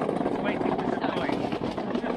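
A man's voice speaking over a loud, steady mechanical rumble of machinery in a warehouse loading bay.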